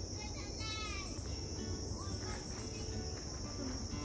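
Steady, high-pitched chorus of insects, with a few short bird chirps in the first second and a low rumble underneath.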